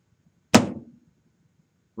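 A single sharp knock about half a second in, dying away within half a second.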